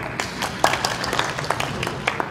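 Scattered applause from the audience: a small number of people clapping irregularly.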